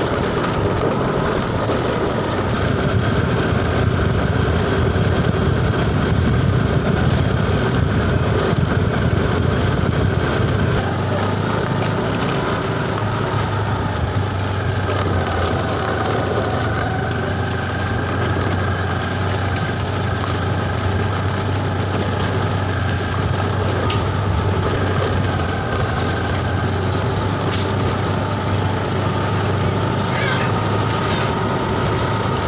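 Honda Activa scooter's small engine running while riding, with wind rush on the microphone; the sound drops a little about eleven seconds in.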